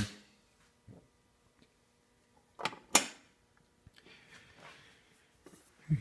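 Two sharp clicks about a third of a second apart: a switch being flipped to turn on a homemade anodizer's power supply.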